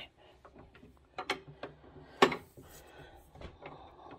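Scattered mechanical clicks and knocks from a stack paper cutter as it is set up for a cut, the loudest knock a little over two seconds in.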